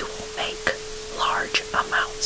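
Softly whispered affirmations in short phrases over a steady hiss of background noise, with one continuous steady tone just below 500 Hz running underneath, near the 432 Hz of the track's name.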